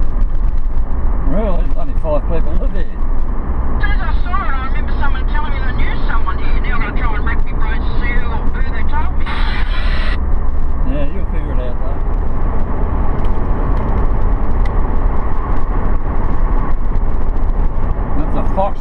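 Car driving along the road with a steady low rumble of engine and road noise, and indistinct voices talking over it in places.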